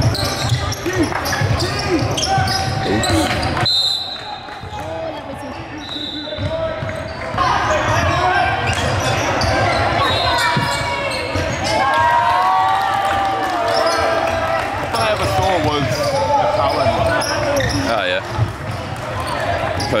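Game sound in a basketball gym: a basketball bouncing on a hardwood court, with players' and spectators' voices calling out in the echoing hall.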